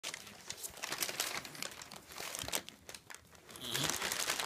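Brown kraft paper crinkling and rustling in irregular bursts as two kittens wrestle on it and under it.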